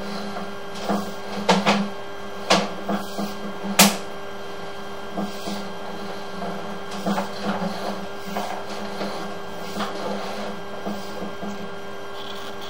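Sewer inspection camera rig being pushed down a pipe: a steady hum under irregular clicks and knocks, the sharpest about four seconds in.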